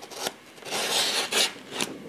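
Rasping scrapes from the backdrop being cut by hand: about four strokes, the longest about a second in.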